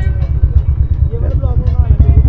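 Motorcycles running at low road speed side by side, a KTM Duke 390 and a Royal Enfield, giving a steady low fluttering rumble.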